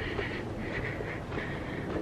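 Quiet, steady street background noise: a low rumble with a light hiss, and no clear single event.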